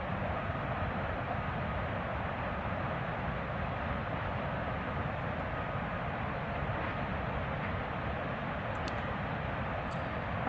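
Steady rushing roar of water pouring down Oroville Dam's overflowing spillway, an even rumble with no changes.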